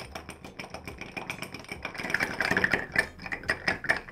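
Bar spoon stirring large ice cubes in a cut-glass rocks glass: a rapid, continuous clinking and rattling of ice against glass and spoon, louder in the second half.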